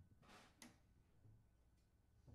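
Near silence: room tone, with a faint soft hiss at the start and a small click about half a second in.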